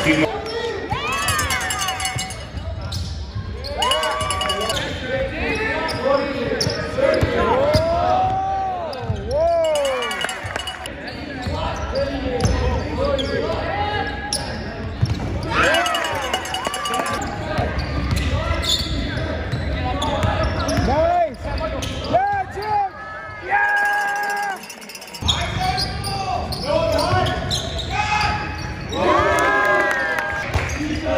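Basketball game sound in a gym: many short sneaker squeaks on the wooden court, a basketball bouncing, and voices of players and spectators.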